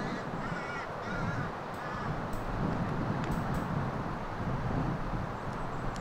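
Steady wind noise on an open course, with a bird calling harshly a few times in the first two seconds and a few sharp clicks a little later, one of them the club striking the ball off the tee.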